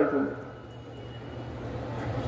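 A man's voice trails off at the very start, then a pause filled by a low steady hum and faint background noise that grows slightly louder toward the end.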